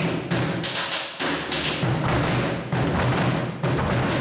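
Hand drums playing a fast, steady Malagasy dance rhythm, a dense run of evenly repeating strokes.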